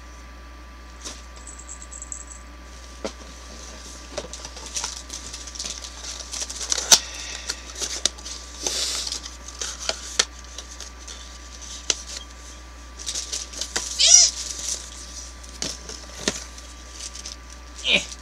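Small cardboard and plastic gift packaging being handled and opened: rustling, crinkling and scattered sharp clicks. About 14 s in, a short high-pitched call rises and falls.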